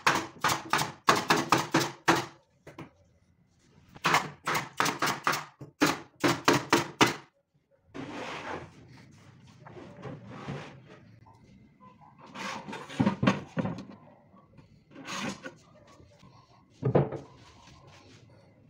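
Pneumatic nail gun firing nails into wooden cabinet panels: two quick runs of about ten sharp shots each, around four a second, over the first seven seconds. After that, the wooden box and its panels are shifted and set down with a few dull knocks.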